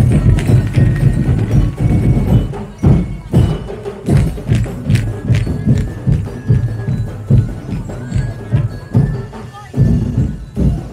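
A drum and percussion ensemble playing a driving street-dance beat, about two strong beats a second, with sharp wooden knocks over the low drums.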